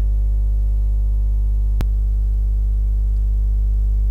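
Loud, steady electrical mains hum with a buzzy string of overtones, running under the whole recording. A single sharp click comes about two seconds in.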